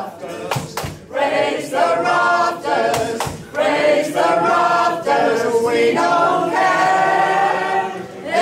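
Small mixed choir of men and women singing a folk song together unaccompanied, in phrases with short breaks between them.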